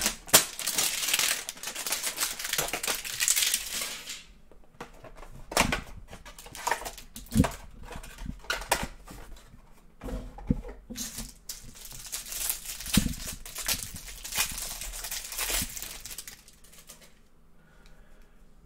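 Plastic wrap crinkling and being torn off a Mosaic basketball trading-card hanger box for the first four seconds or so. After that come scattered light taps and clicks as the box and cards are handled.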